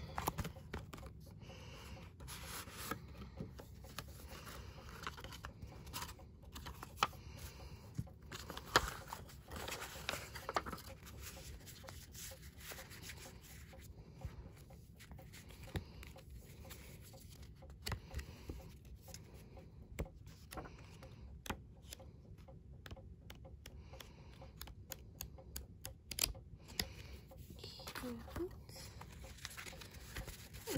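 Paper and card being handled: an album's card sleeve, booklet and photobook pages rustling, sliding and tapping, with many small sharp clicks throughout.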